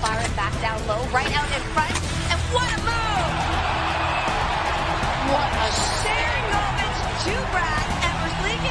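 Hockey arena broadcast sound: a crowd cheering, swelling in the middle, over music and indistinct voices.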